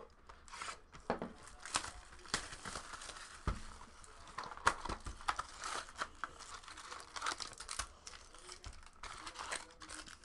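Cellophane shrink wrap torn and crinkled off a cardboard trading-card box, then the box opened and foil packs handled, making irregular crackles and snaps.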